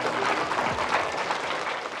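An audience of young children applauding.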